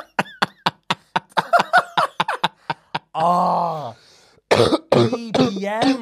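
Two men laughing hard in quick, breathy, coughing bursts, with a long falling groan-like laugh about three seconds in and more laughter near the end.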